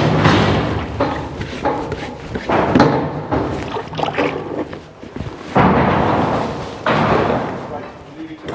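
Metal sheep-pen gates and hurdles clattering and banging as a ram is handled, with several sudden loud clangs that ring on briefly, under indistinct voices.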